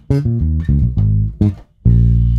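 Electric bass guitar playing an E-flat minor bass line of short plucked notes, shifted into different octaves. A short break comes near the end, then a long held note.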